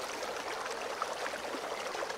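Bubbling, fizzing water sound effect: a steady watery hiss scattered with tiny pops.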